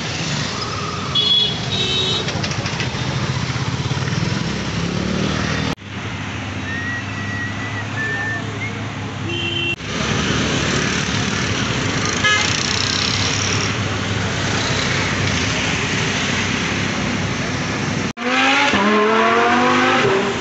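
Busy road traffic noise with short car horn toots about a second in and again near the middle. Near the end an engine revs up, its pitch rising steeply.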